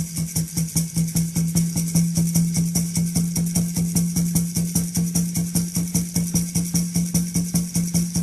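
Otoe peyote song music: a water drum and gourd rattle keep a fast, even beat over a low, steady tone.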